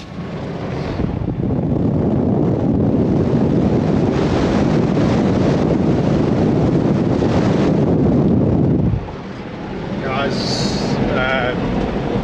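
Wind rushing over the microphone and road noise from a moving vehicle, heard from inside the cab: a loud, steady rush that drops off sharply about nine seconds in. A man's voice begins near the end.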